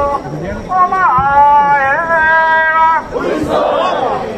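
Mikoshi bearers shouting: one long held call from about one to three seconds in, then many men's voices shouting together near the end.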